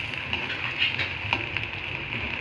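Tempe frying in hot oil in a wok: a steady sizzle with a few short crackles.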